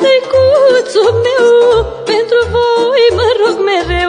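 A woman singing a Romanian folk song (muzică populară) with a wavering, trilled melody, over instrumental accompaniment with a steady low beat.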